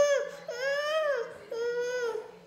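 A toddler crying in long, high wails, about three in a row, each rising and then falling in pitch.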